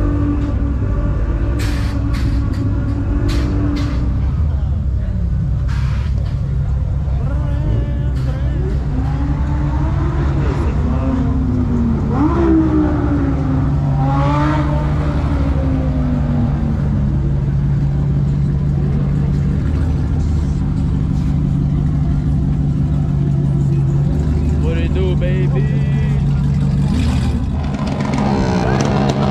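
Car engines running at a car meet, with one engine revving up and down about ten to sixteen seconds in. A few sharp clicks come in the first few seconds, and crowd voices sit underneath.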